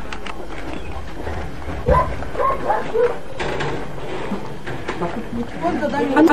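A dog barking and yipping a few times, mostly about two to three seconds in, among people's voices.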